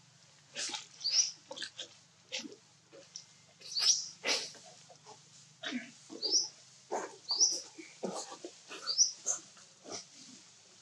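Macaques giving a string of short, sharp squeaks, many ending in a quick rising chirp, about a dozen in uneven clusters.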